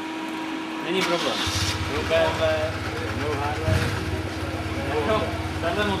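A motorcycle engine idling, coming in about a second and a half in and running steadily, with voices talking nearby.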